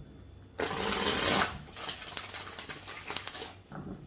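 A deck of After Tarot cards being shuffled: a swishing rush about half a second in, then a run of rapid clicking as the cards fall together.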